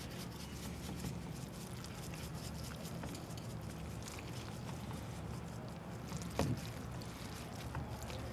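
Low steady background hum with faint scattered light ticks as granular egg cure is shaken from a bottle onto salmon egg skeins in a plastic tub.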